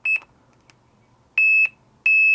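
Continuity beeper of a Pokit pocket multimeter sounding a steady high-pitched beep in two separate pulses, a short one at the start and a longer one about a second and a half in, each time the probes make contact through the antenna: a low-resistance, continuous path.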